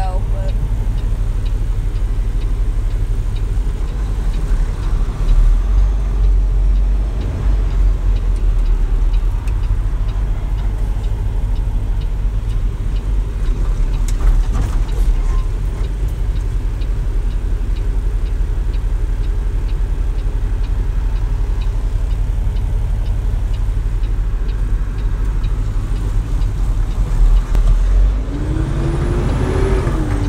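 Semi truck's diesel engine and road noise heard from inside the cab while driving: a steady low drone.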